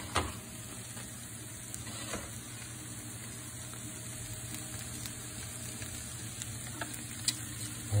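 Home fries, diced potatoes and sliced onions, sizzling steadily in a frying pan, with a few sharp clicks.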